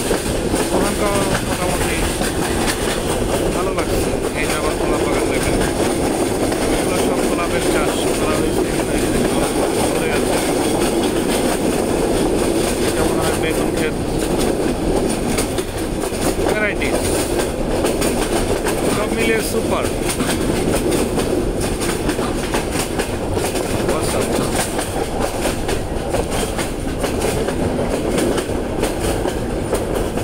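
Train running along the track, heard from inside a passenger carriage: a steady rumble with wheel clatter.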